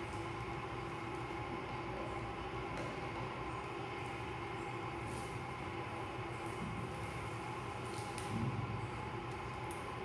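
Steady room hum with several even tones running throughout, with a few faint clicks and scratches as fingernails pick clear adhesive tape off a tabletop to free a popsicle stick.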